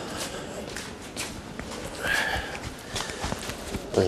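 Footsteps and shuffling of several people moving across a hard floor, with scattered light knocks and a brief murmur of a voice about two seconds in.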